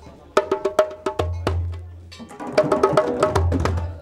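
Djembe hand drums playing a short practice rhythm pattern: sharp struck notes in two phrases of about a second each, with a pause between.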